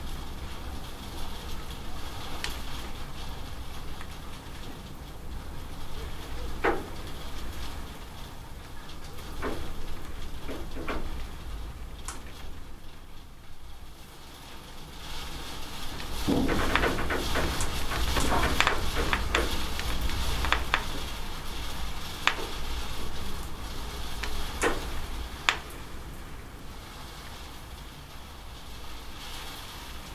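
Steady rain with scattered sharp drips and splats from water running off a corrugated roof edge. The rain thickens for a few seconds around the middle.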